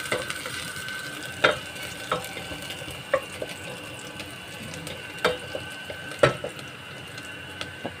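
Chopped garlic, onion and ginger sizzling in oil in a stainless steel pot as they sauté, stirred with a spatula that knocks sharply against the pot about five times.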